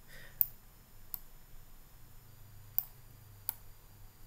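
Computer mouse clicking: four sharp, separate clicks at uneven intervals.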